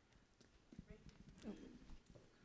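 Near silence with a few faint, irregular soft knocks and a brief faint voice about one and a half seconds in.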